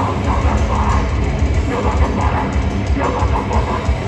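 Heavy band playing live: distorted electric guitars, bass and drums, loud and dense without a break.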